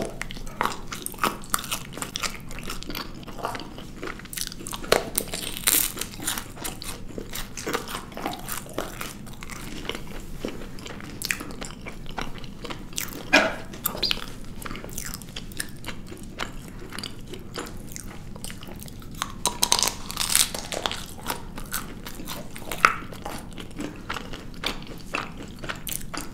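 Close-up biting and chewing of chocolate-covered marshmallow sweets with wafer bases: the chocolate shells and wafer crack and crunch under the teeth, with chewing in between. Several sharper cracks stand out.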